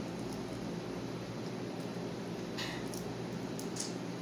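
A person eating shrimp with her fingers: quiet mouth sounds, with two short wet smacks at about two and a half and nearly four seconds in, over a steady low hum.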